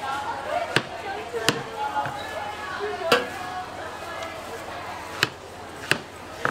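Long kitchen knife cutting through a peeled watermelon and knocking on the cutting board: about six sharp, short knocks at uneven intervals, over background chatter.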